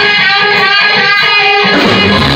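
Live rock band playing a blues-rock song; the bass and drums drop out, leaving an electric guitar playing a repeated riff on its own, and the full band comes back in near the end.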